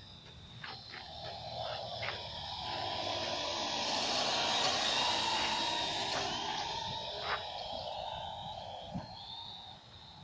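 Small quadcopter drone's rotor noise swelling as it flies close past, loudest about halfway through, then fading as it moves off.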